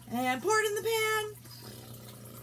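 A woman's voice in a sing-song chant lasting about a second, then faint room noise.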